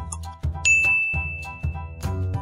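A single bright ding chime sound effect about half a second in, ringing on as one long steady tone, over upbeat background music. It is the quiz's time-up signal as the countdown runs out and the answer is revealed.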